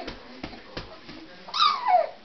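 Baby giving one high-pitched squeal near the end, falling in pitch over about half a second, after a few short soft knocks.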